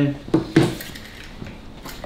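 A couple of light metallic clinks about half a second in, like small metal objects knocking together on a glass counter, then quiet room sound.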